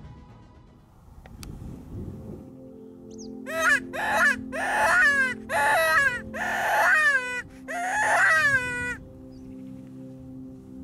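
A roe deer call blown by mouth, six whining cries in quick succession from about three and a half seconds in, each falling in pitch: an imitation of a doe or fawn to lure a roebuck. Steady background music plays underneath.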